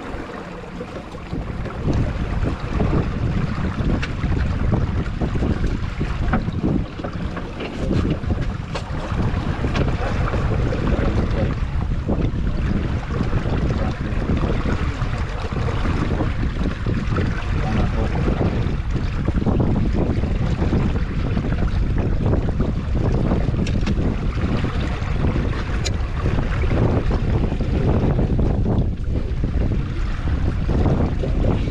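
Wind buffeting the microphone over the rush and slap of water along the hull of a small wooden sailing dinghy under way, with a few light clicks.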